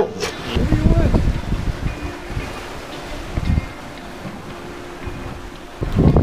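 Wind buffeting the microphone aboard a sailing catamaran underway, loudest in the first second and then easing, with faint music beneath.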